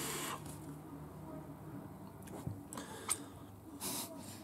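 A faint airy draw through a Druga RDA vape's drip tip, pulled through airflow that the vaper finds too tight, almost closed, fading within the first half second. Then a quiet room with a light click about three seconds in and a short breathy rush near the end.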